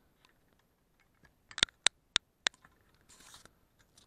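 A quick run of sharp clicks from buttons or keys being pressed: a close double click, then three single clicks, all within about a second. A brief soft rustle follows.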